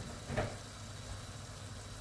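Low steady hum of an appliance running in the background, with one brief soft sound about half a second in.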